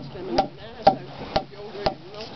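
A mallet striking a freshly peeled ash log, five steady blows about two a second. The pounding loosens the log's growth layers so that strips can be torn off for basket splints.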